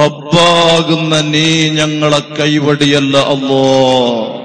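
A man's voice chanting an Arabic supplication in a long, drawn-out melodic note, held steady for about three seconds after a short opening phrase.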